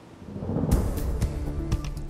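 Opening theme music of a TV news weather show: a low rumble swelling up, then sharp hits coming in about two-thirds of a second in.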